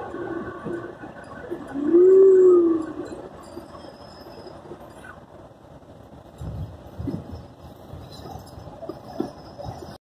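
A vehicle's running and road noise heard from inside the cab as it drives out of a tunnel. About two seconds in comes the loudest sound, a single drawn-out hoot lasting about a second that rises and then falls in pitch.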